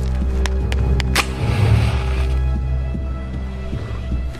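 A wooden match struck against a matchbox: four quick scrapes, the last and loudest catching, followed by a brief hiss as it flares. A low, sustained music drone plays underneath.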